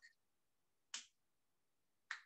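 Near silence, broken once, about a second in, by a single short click.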